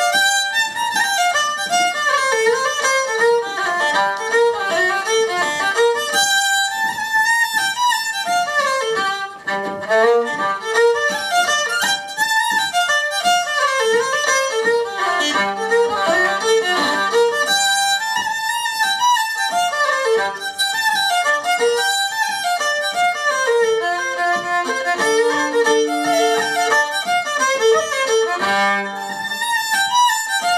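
Fiddle playing a fast Irish traditional reel: quick running bowed notes, with a few longer-held low notes sounding under the melody.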